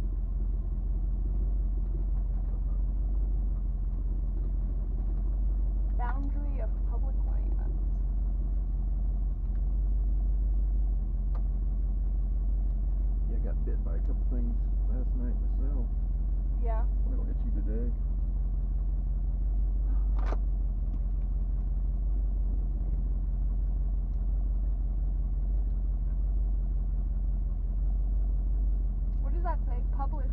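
A 1977 Jeep Cherokee's engine running with a steady low rumble, heard from inside the cab as the Jeep creeps along a dirt track. Indistinct voices come in now and then, and there is one sharp click about twenty seconds in.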